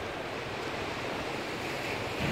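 Sea surf washing over a rocky shoreline: a steady rushing noise with no single wave standing out.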